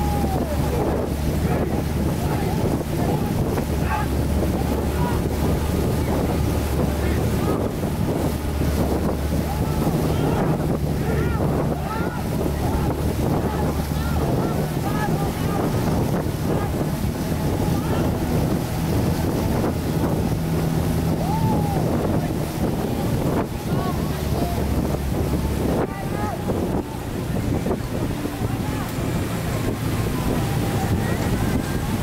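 Wind buffeting the microphone and water rushing past a moving boat, over a low steady engine hum, with many short shouted cries from the paddlers of a long Khmer racing boat.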